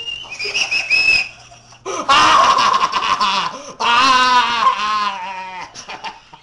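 A man with duct tape over his mouth making high squeals, then two long shrieks, the second one wavering in pitch.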